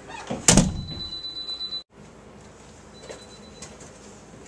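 A single loud thump about half a second in, followed by a thin high whine that cuts off abruptly just before two seconds in. Then only faint room noise with a couple of small clicks.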